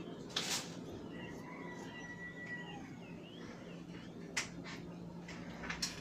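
A single snip of scissors cutting through fabric about half a second in, followed later by a few light clicks as the scissors are handled and set down on a hard tabletop, over a faint steady hum.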